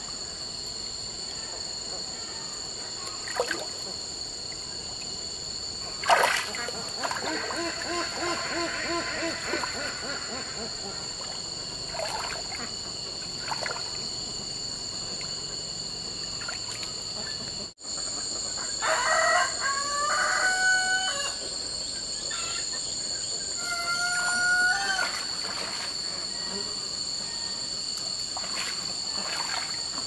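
Riverside ambience: a steady high-pitched insect drone over running water, with a sharp knock about six seconds in and several calls of farm fowl in the middle and again later.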